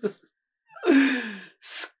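A man's voiced sigh, one drawn-out 'ahh' that falls in pitch, about a second in. A short breathy hiss follows near the end.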